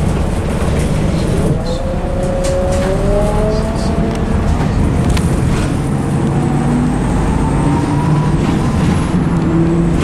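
Inside a bus as it drives: steady engine and road rumble, with a whine that rises in pitch from about a second in as the bus accelerates, and a few light rattles.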